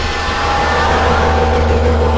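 Experimental electronic synthesizer drone: a steady low hum with sustained, unchanging tones layered above it.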